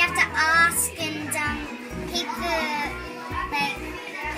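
Children's voices talking and chattering over a bed of background music.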